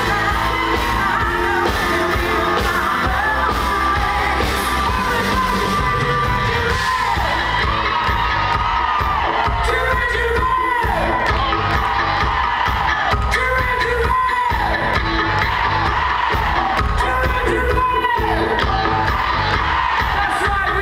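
Live pop-rock band playing loud, with a male lead vocal and a female backing vocal over electric guitars, bass, drums and keyboards.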